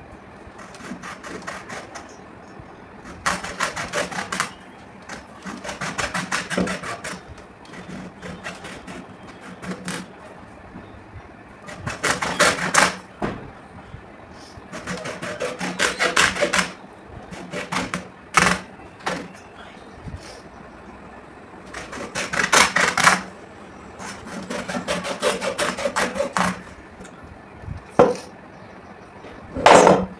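Hand hacksaw cutting into a red leather cricket ball: spells of quick back-and-forth strokes, each a second or two long, broken by short pauses, with a few sharp knocks between spells.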